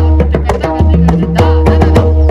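Pakhawaj barrel drum played with the hands in a quick, steady rhythm of sharp strokes over deep, ringing bass tones.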